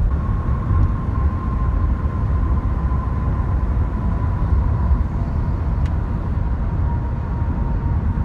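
Inside the cabin of a 2012 Nissan Sentra 2.0 cruising at highway speed: a steady low rumble of road and tyre noise, with the engine running at about 2,000 rpm. A faint, steady high whine runs through it.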